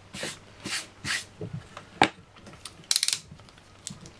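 Handling noises on a cutting mat: a few short rustling brushes, a single sharp tap about two seconds in, and a quick rattle of clicks a second later, as a cardboard-reel cylinder is set down and a tool is picked up.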